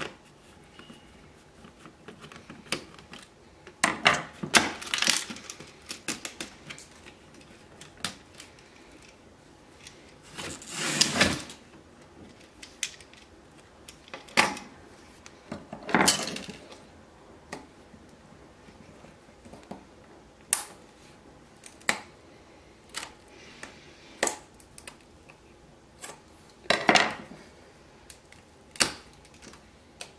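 Irregular clicks, knocks and light clatter of a screwdriver and small plastic and metal radio parts being handled on a wooden workbench, with one longer noisy handling sound about eleven seconds in.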